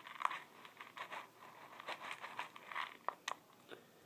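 Small dry pebbles crackling and rattling in a plastic tub as a peanut-butter-coated apple piece is pressed and rolled in them. It is a dense run of small crunches and clicks, thinning after about three seconds to a few separate clicks.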